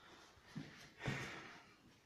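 A quiet room with two faint breaths through the nose, a short one and then a longer one that trails off, from a man pausing between sentences.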